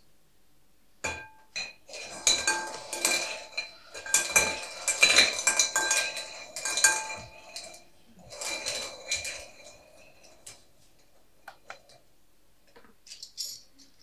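Draw balls being stirred in a clear glass bowl, clattering and clinking against the glass so that the bowl rings. It comes in two bouts of several seconds, the second shorter, and a few light clicks follow near the end.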